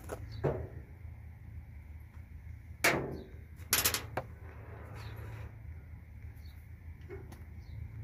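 Metal trimmer parts being handled on a steel cart: a few scattered clunks and knocks as the string trimmer's shaft and gear head are pulled apart and set down. The loudest knocks come about three and four seconds in, over a steady low hum.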